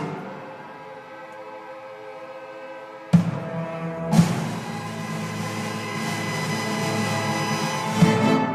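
Youth string orchestra with drum set playing the final bars of a piece: a soft held chord, then two sharp accented hits about three and four seconds in, and a sustained full chord that grows louder toward the end.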